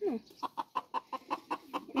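Chicken clucking: a quick run of short, evenly spaced clucks, about seven a second.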